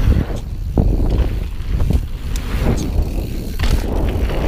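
Marin Alpine Trail 8 full-suspension mountain bike riding fast down a dirt trail: a heavy rumble of wind buffeting the camera microphone and tyre noise, with several sharp knocks and rattles from the bike over bumps.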